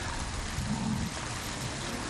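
Steady, even hiss of outdoor background noise picked up by the speaker's microphone, with a faint low murmur a little under a second in.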